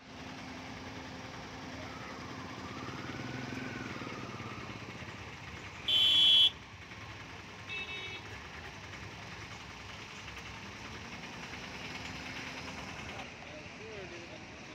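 Steady hum of held-up road traffic with engines idling. About six seconds in comes one loud vehicle horn blast of about half a second, and a shorter, fainter horn toot follows near eight seconds.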